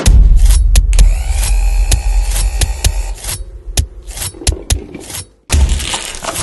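Sound-design sting for an animated logo: a deep bass boom hits as the dance music stops. It is followed by a scatter of sharp clicks and faint sliding tones that die away, then more low thumps near the end.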